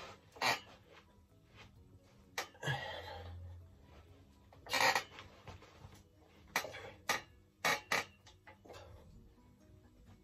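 Quiet background music under a set of dumbbell bench presses: short bursts of hard exhaling and sharp clinks from plate-loaded dumbbells, several of them close together near the end.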